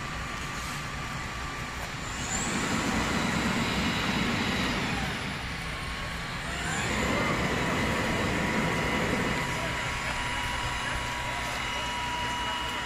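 A fire truck's diesel engine running at a fire scene, its low rumble swelling twice for a few seconds at a time.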